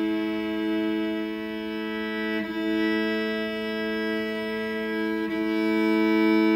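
Cello double stop: two strings bowed together as a sustained fifth, with bow changes about two and a half and five seconds in. The fifth is being brought into tune, toward a pure 3:2 perfect fifth.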